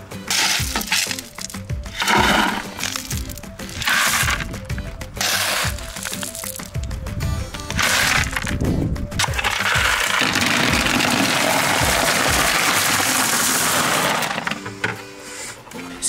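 Steel shovel scooping river stone and tipping it into a plastic bucket: several separate scoops of clattering, grinding stones. About ten seconds in comes a longer steady rush of stones that lasts about four seconds. Background music plays throughout.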